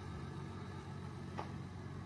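A car engine idling steadily with a low hum, and one short click about one and a half seconds in.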